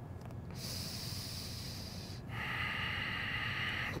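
A person breathing audibly on a close microphone: a long, high hissing breath starting about half a second in, then a lower, slightly louder breath from just past two seconds in.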